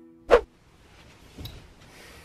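The last held notes of soft background music cut off, followed by a single short, sharp sound about a third of a second in, then quiet room noise with a faint knock.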